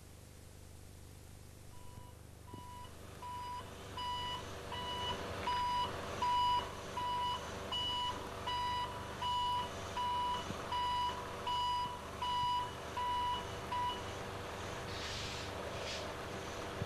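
Reversing alarm on a milk tanker lorry, beeping steadily at about three beeps every two seconds, over the low hum of the lorry's engine. The beeping starts about two seconds in and stops near the end, followed by a short hiss.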